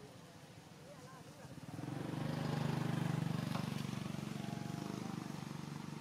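A motor vehicle's engine passing by: it swells up about two seconds in, is loudest in the middle, and slowly fades away toward the end.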